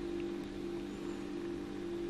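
A steady low hum with two constant tones over a faint hiss: background room tone, with no other sound standing out.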